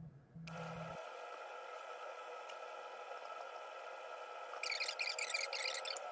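Quick run of key clicks on a MacBook Air M2 keyboard, lasting a little over a second near the end, over a steady background hum.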